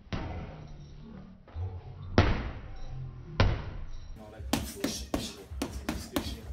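Background music with a few heavy, echoing hits for the first four seconds. Then, about four seconds in, a quick run of sharp slaps as boxing gloves land on a bare stomach in body-conditioning punches.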